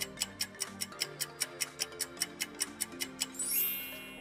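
Quiz countdown-timer sound effect: fast, even clock-like ticks, about five a second, over light background music, ending near the end in a rising shimmer of high tones as time runs out.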